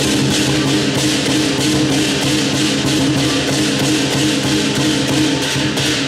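Southern lion dance band playing: a large Chinese lion drum beaten in a fast, steady rhythm with crashing cymbals and a ringing gong.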